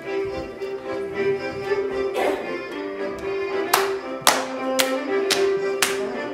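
Hand claps from a group clapping hands with partners, over instrumental dance music with a sustained melody. A single clap comes about two seconds in, then the claps fall about twice a second through the second half.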